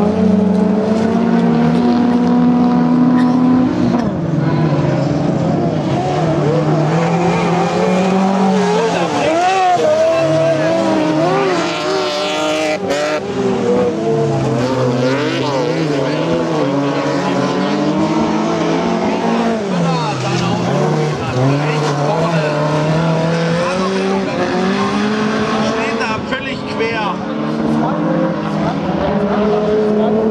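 Several autocross race car engines revving hard on a dirt track, their notes climbing and dropping over and over as the cars accelerate, shift and brake for corners, with overlapping engine sounds from the field. A single sharp crack stands out about halfway through.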